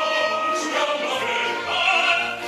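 Opera singers and chorus singing full-voiced with orchestral accompaniment, with held, wavering notes.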